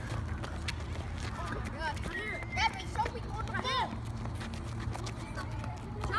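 Young voices shouting and calling out from a distance across open pavement, loudest in a few short calls in the middle, over a steady low rumble. Scattered light taps of running footsteps on asphalt.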